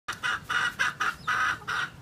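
A chicken clucking: a quick, even run of short clucks, about three or four a second.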